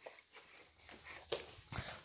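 Faint bare footsteps on a hardwood floor, a few soft thuds spaced apart.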